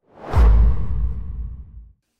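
Whoosh transition sound effect with a deep low boom underneath: it swells in, peaks about half a second in, and fades away over the next second and a half.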